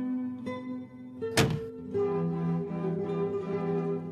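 A car door shutting once, a short sharp thunk about a second and a half in and the loudest sound here, over film score music of plucked and bowed strings.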